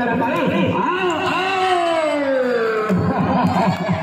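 A person's drawn-out voice call that falls slowly in pitch for about a second and a half, over other voices; the voices crowd in more densely near the end.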